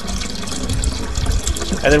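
Aguamiel (maguey sap) pouring in a steady stream from a plastic jug through a plastic strainer into a barrel of fermenting pulque.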